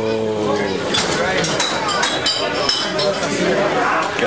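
Cutlery and crockery clinking several times, with short high ringing tones, among voices.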